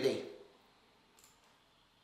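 A man's voice finishing a word, then near-quiet room tone with one faint short click about a second in.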